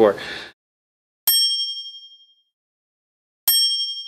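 Two identical bright ding chimes about two seconds apart, each a single strike that rings out and fades over about a second, over dead silence.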